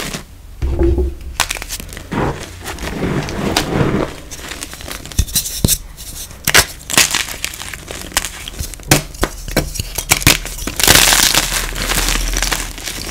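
Gym chalk blocks being crushed and crumbled by hand. A run of sharp snaps and crackles comes through the middle, and a louder, denser gritty crumbling near the end as a block breaks apart into powder and lumps.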